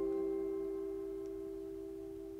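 A C major chord on a clean-toned electric guitar ringing out after being struck, its notes held steady and slowly fading away.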